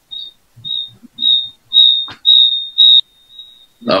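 Electronic alarm beeping: a high-pitched beep repeated about twice a second, each beep louder and longer than the last, ending in a fainter steady tone that stops near the end. A single click about halfway through.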